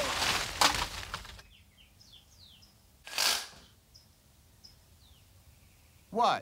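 Rustling crash of leaves and branches as something falls into a bush, with a sharp snap in the middle, fading out over about a second and a half. Then faint bird chirps, with one short rush of noise about three seconds in.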